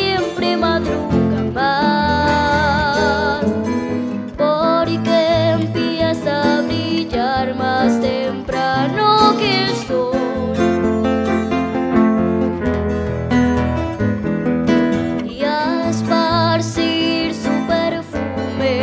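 A bambuco played live: a young girl's voice singing long notes with vibrato, accompanied by her Casio digital piano and two acoustic guitars.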